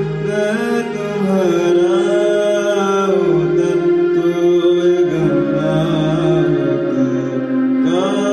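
A young man sings a slow Hindi ballad melody with long, gliding notes, accompanying himself on an electronic keyboard. The keyboard holds sustained chords that change every couple of seconds.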